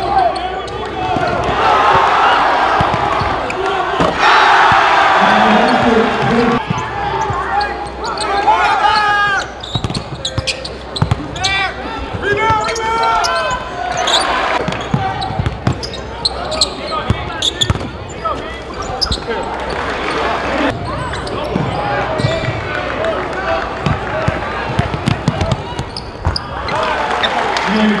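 Live basketball game sound in a gym: a constant crowd and voices, louder in the first seven seconds, with a basketball bouncing on the hardwood floor.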